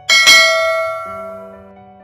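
Bell-chime notification sound effect, sounding twice in quick succession near the start and then ringing out and fading over about a second and a half, over soft background music.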